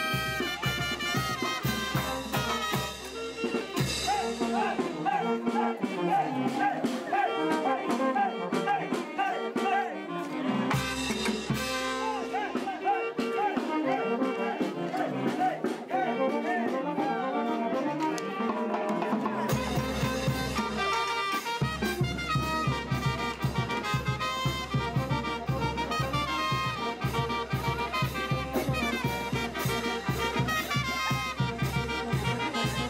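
Brass band dance music, with horns over a steady drum and bass beat. The drums and bass drop out twice, for about five seconds each time, leaving the horns playing alone.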